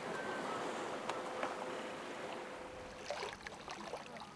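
Water rushing along the hull of a sailing yacht under way in a choppy sea: a steady wash of noise that slowly fades toward the end.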